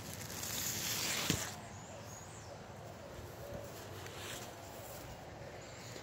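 Rustling for about a second that ends in a sharp click, then quiet outdoor ambience with a faint bird chirp.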